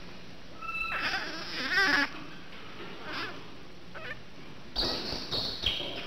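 Infant rhesus monkey calling: a thin whistle-like note, then a louder wavering squeal that peaks just before two seconds, followed by several shorter calls further in.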